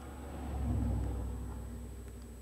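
A car driving past, heard from inside a parked car: a low rumble that swells about a second in and then fades.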